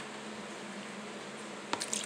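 Steady low room hum and hiss, then a few short clicks and scrapes near the end, typical of a spoon stirring dessert mix and milk in a plastic bowl.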